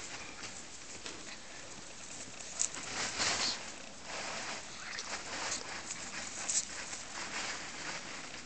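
A Tibetan spaniel and a long-haired cat play-wrestling on grass: scuffling and rustling of fur and grass, with a louder rush of rustling about three seconds in and shorter bursts later.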